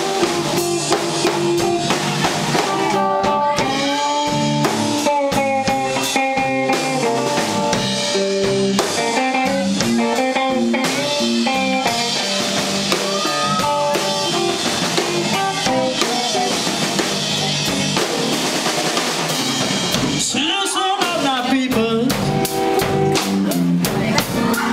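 Live blues band playing an instrumental: electric guitar lines with bent notes over bass and a drum kit keeping a steady beat.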